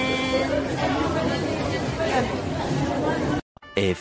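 Many people talking at once in a busy, echoing food court. It cuts off abruptly about three and a half seconds in, and a narrator's voice begins just before the end.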